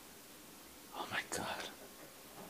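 A man's quiet, whispered speech about a second in, over faint room tone.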